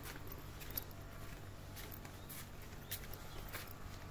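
Faint footsteps on a stone garden path, a handful of irregular light steps over a low steady background hum.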